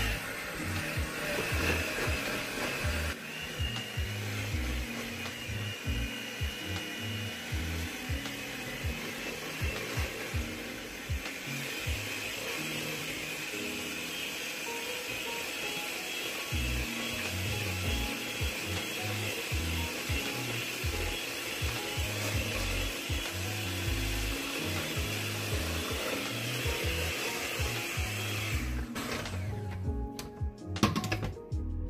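Electric mixer whisking crepe batter in a bowl, running steadily, then switching off about a second before the end.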